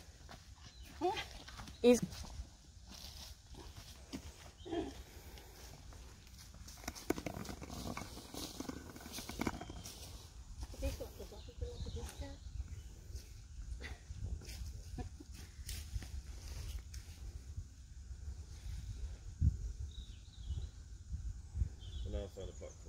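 Short snatches of low voices now and then, over a steady low rumble on the microphone and scattered faint clicks.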